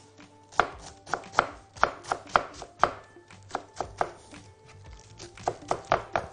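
Knife chopping iceberg lettuce on a wooden cutting board, a steady run of sharp chops about two to three a second.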